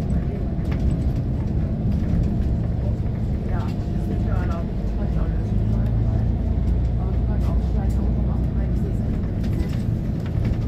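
Steady low rumble of a bus's engine and tyres on the road, heard from inside the passenger cabin, with faint voices of passengers in the background.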